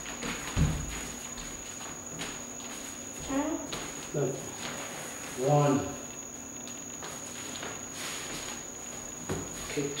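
A heavy footfall on a hardwood floor about half a second in, as a spinning kick lands, then a few softer steps, over a steady high-pitched whine.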